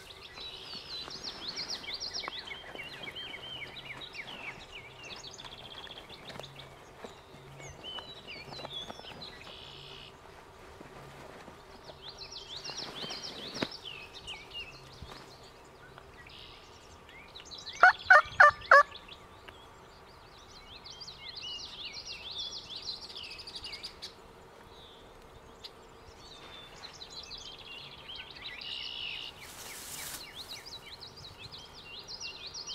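Songbirds singing throughout a quiet field, broken about two-thirds of the way in by a short, loud burst of turkey calling: four quick notes in under a second.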